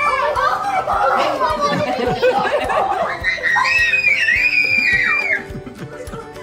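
Excited children's voices, shrieks and laughter over background music, with one long high-pitched squeal in the middle.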